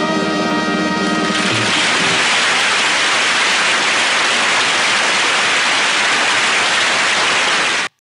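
The song's final held chord dies away in the first two seconds, giving way to studio audience applause, which cuts off suddenly just before the end.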